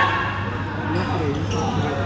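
Badminton rally: rackets striking a shuttlecock, with a few short sharp hits, mixed with players' voices calling over a steady low hum.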